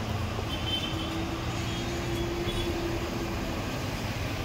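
Steady background noise with a low rumble and hiss, with a faint steady tone for a few seconds in the middle.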